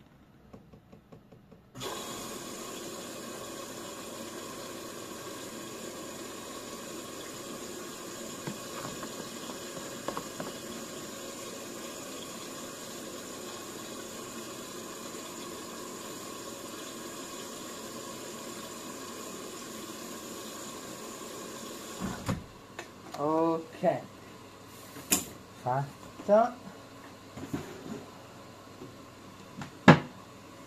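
Beko front-loading washing machine taking in water at the start of its cycle: the water inlet opens about two seconds in with a steady rush of water, which cuts off suddenly after about twenty seconds.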